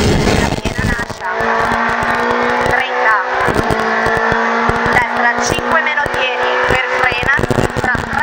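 Renault Clio Williams rally car's 2.0-litre four-cylinder engine heard from inside the cabin under full throttle. It dips briefly about a second in as the car shifts up from fourth to fifth, then pulls on at high revs with its pitch slowly rising.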